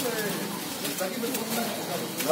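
Indistinct voices of a group of men talking as they walk, over steady outdoor background noise.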